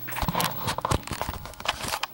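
Handling noise on the camera's own microphone as the camera is picked up and turned: irregular rubbing, scraping and small knocks throughout.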